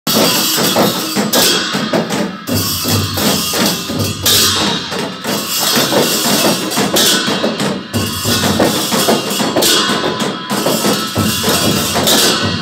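Newar dhime baja ensemble playing: several dhime barrel drums beaten with stick and hand in a driving rhythm, with large hand cymbals clashing over them in swells every few seconds.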